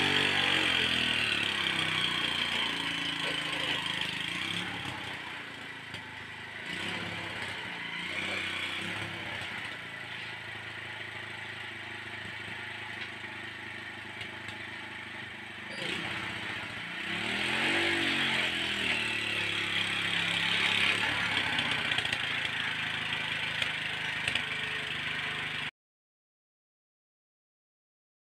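Small engine of a homemade steel-frame car running steadily, rising and falling in pitch as it is revved about two-thirds of the way in. The sound stops abruptly just before the end.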